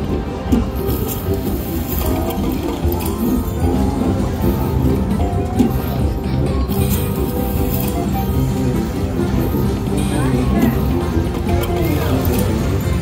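Huff N' More Puff video slot machine playing its free-games bonus music, with the reel spin and stop effects of each free game, over voices in the background.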